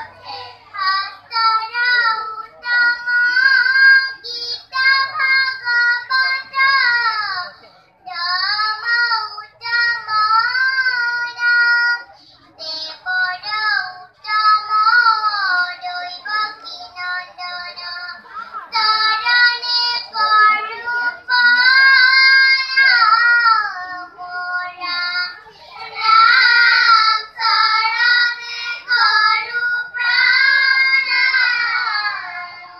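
Children singing a melodic song together, in high-pitched phrases of a few seconds each with short breaks between them.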